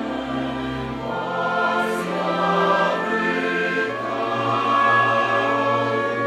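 Mixed choir of men's and women's voices singing slow, held chords, moving to new chords about a second in and again near four seconds.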